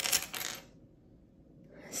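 Small metal charms on a charm bracelet clinking together as it is handled, a brief jingle in the first half second.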